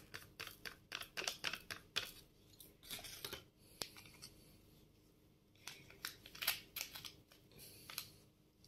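A torn-open paper sachet being handled and tapped as salt is shaken out of it: faint crinkles and small taps in clusters, with a lull in the middle.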